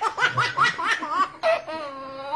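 A baby belly laughing: a quick run of short, high laughs, then one longer drawn-out laugh near the end.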